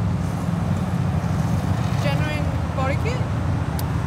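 Steady low rumble of vehicle traffic and running car engines, with faint voices of people in the background about halfway through.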